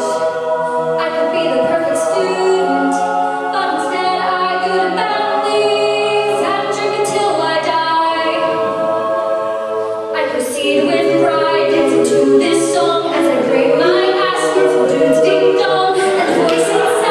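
An a cappella group singing, voices only with no instruments: a soloist on a microphone over the group's backing vocals. The singing grows louder about ten seconds in.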